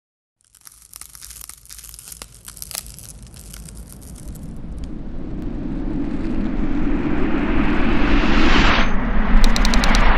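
Logo-intro sound effects: irregular crackling clicks at first, then a rumbling whoosh that swells steadily louder, cut short near the end by a quick run of sharp hits.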